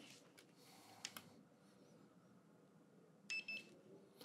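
Two short, high-pitched electronic beeps in quick succession near the end, with a faint click about a second in; otherwise near silence.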